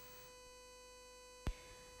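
Faint steady electrical hum with a couple of constant tones, broken by a single sharp click about one and a half seconds in.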